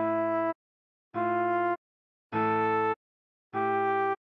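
Trombone playing a melody slowly, one note at a time: four evenly spaced held notes of about half a second each, with short silences between.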